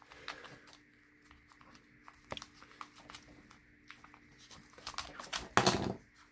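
A paper mailing envelope being handled and slit open with a plastic letter opener: small paper rustles and clicks, then a louder rip of paper near the end.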